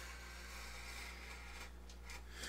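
Faint scratching of a sharp number 11 hobby blade cutting through thin balsa sheeting along a wing rib, over a low steady hum.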